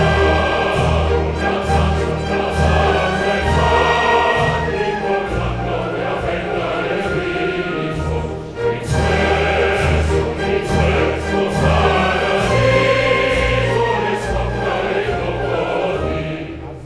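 Opera chorus singing with full orchestra in a lively dance rhythm, a steady pulse of low bass beats under the voices, with a brief break a little past halfway.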